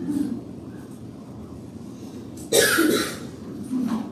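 A person coughing once, a short harsh burst about two and a half seconds in after a quiet pause.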